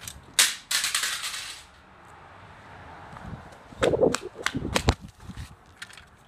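A toy sports car smashing onto asphalt: a sharp crack about half a second in, then a brief scraping rattle. A run of sharp clicks and knocks follows about four to five seconds in.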